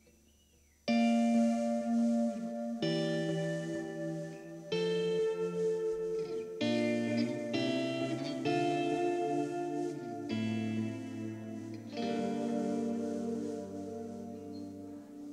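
Amplified electric guitar playing slow sustained chords through effects, each left to ring, changing every second or two. It comes in suddenly about a second in, after near silence.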